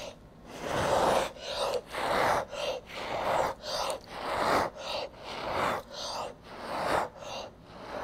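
A person blowing hard by mouth onto wet acrylic pour paint to push it outward into a bloom, in about a dozen short breathy puffs, roughly one every half-second.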